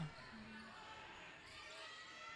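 Faint court sound from a basketball game in an indoor sports hall: a basketball being dribbled over low arena ambience.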